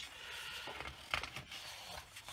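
Sheets of 12x12 patterned scrapbook paper sliding and rustling as hands fan them out across a desk, with a few short crisp paper crackles about a second in.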